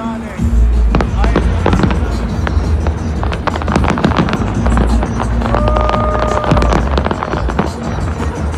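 Fireworks bursting and crackling in quick succession over loud music with a deep bass that comes in about half a second in. A held tone sounds for about a second past the middle.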